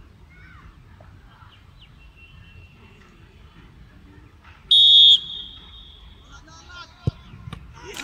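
Referee's whistle blown once in a short, shrill blast a little over halfway through. About two seconds later comes the single thud of a football being kicked for a penalty.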